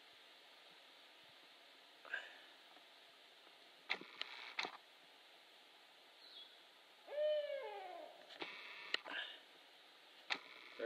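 An owl calling once about seven seconds in: a single falling hoot lasting about a second. A few short higher calls and several sharp clicks are scattered around it.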